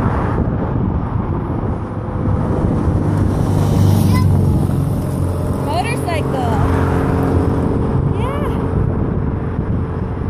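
Steady outdoor rumble of wind on the microphone, with a vehicle engine running nearby that is strongest in the middle of the stretch, and a few short high chirps over it.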